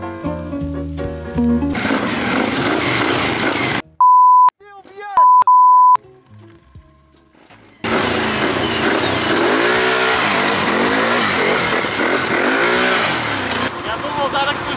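Music ends about two seconds in. About four seconds in, a loud steady bleep tone covers a short spoken line. From about eight seconds, ATV (quad bike) engines rev on a muddy forest track.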